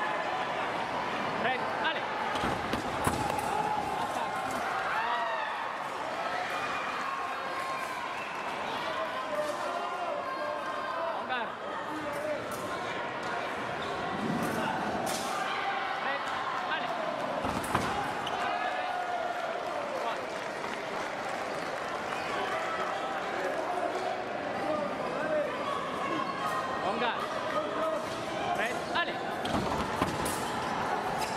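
Fencing hall ambience: voices and crowd chatter throughout, sports shoes squeaking on the piste as the sabre fencers move, and a scattering of sharp clicks of blade contact, the loudest near the start and about halfway through.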